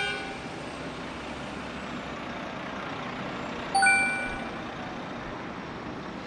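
A bright electronic ding sounding once about four seconds in, over steady street traffic noise; the fading ring of an earlier ding trails off at the very start.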